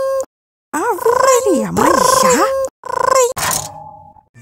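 A person's voice imitating a ringing alarm clock with held, steady tones in several bursts, while a lower voice groans, sliding down and back up in pitch. A sharp hit comes about three and a half seconds in as the clock is slapped, and the ringing fades out.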